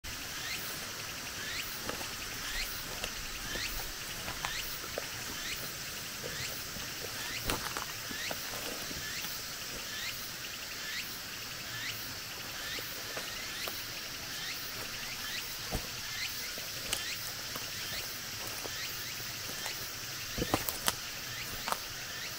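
A small animal's short falling chirp, repeated steadily about twice a second over a steady high hiss, with a few sharp snaps underfoot on the leaf-littered forest floor, the loudest near the end.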